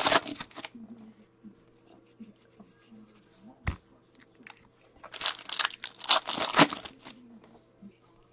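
Foil wrapper of an Upper Deck hockey card pack tearing and crinkling in bursts: once at the start and again for about two seconds past the middle, with a single sharp click in between.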